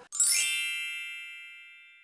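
A bright chime sound effect: one sudden, bell-like ding with a quick sparkling shimmer at its start, ringing on and fading away over about two seconds.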